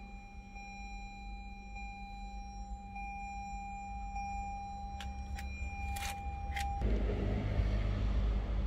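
A steady low hum with a thin, steady high whine inside a car's cabin, a few sharp clicks near the end, then about seven seconds in the whine cuts off and a louder rumbling noise takes over as a rear door stands open.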